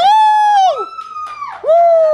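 A man's voice making two long, high-pitched calls close to the microphone. The first breaks off under a second in; the second starts near the end and slowly slides down in pitch.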